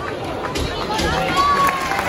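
Football stadium crowd shouting and chanting, many voices rising and falling together, with one voice holding a long note near the end.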